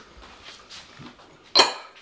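Kitchenware clatter: a single sharp clink of a dish or bowl about one and a half seconds in, after faint handling noise, as dried fruit is added to a glass mixing bowl.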